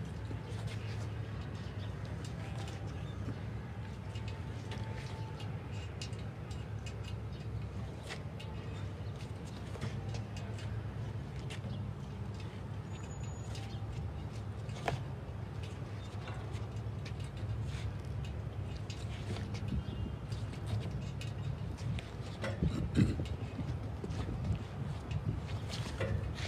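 Outdoor ambience: a steady low rumble of road traffic, with a few faint bird calls and occasional light knocks.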